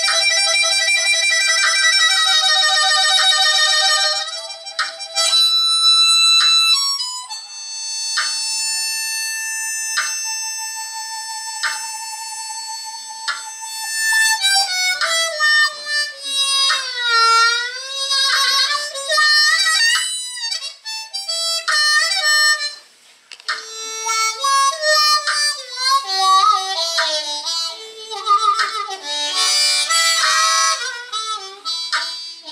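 Solo blues harmonica: a warbling, quavering chord with hand tremolo, then long held notes, then deep bends that sweep down and back up, breaking into quick runs near the end. The hands are cupped around the harmonica and fluttering over it.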